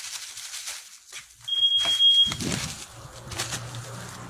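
A single high-pitched electronic beep about one and a half seconds in, lasting under a second, followed by louder handling and rustling noise.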